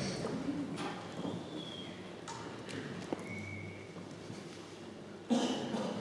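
Quiet hall room tone with scattered knocks, taps and shuffles as a string orchestra readies its instruments to play. A sudden louder sound comes near the end.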